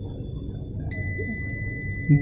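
Small Arduino-driven breadboard buzzer sounding a steady, high-pitched beep that starts about a second in, set off by a hand held close to the ultrasonic distance sensor. The tone signals that an object is within the sensor's set alarm distance.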